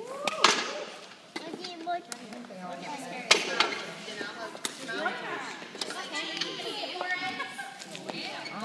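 Several young children's voices chattering and calling out at play, broken by a few sharp clacks, the loudest a little over three seconds in.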